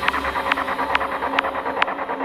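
Dark progressive psytrance music: a sharp percussion hit a little more than twice a second over quick fine ticking, with the deep bass thinning out near the end.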